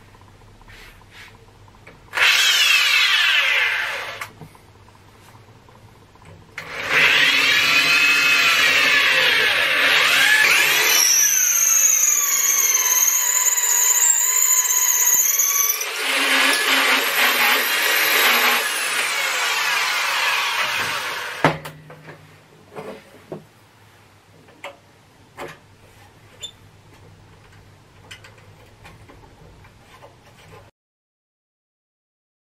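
Electric drill spinning a swaging tool into the annealed end of a copper pipe to expand it: a short spin about two seconds in, then a long run of about fifteen seconds, a whine whose pitch rises and falls, cutting off sharply. A few light clicks follow near the end.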